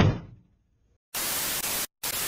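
A sharp thud right at the start that dies away within half a second, then a moment of silence, then a burst of TV-static hiss, under a second long, that cuts off abruptly: a glitch transition sound effect.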